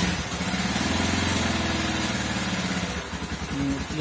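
Mustang Region 200 motorcycle's 200 cc engine running just after starting, idling steadily and sagging slightly about three seconds in. The engine is new and freshly assembled, and is held on light throttle so that it does not stall.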